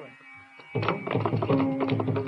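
Live Carnatic concert music: after a brief lull, mridangam strokes come back in quick succession about three-quarters of a second in, under a sustained melodic line.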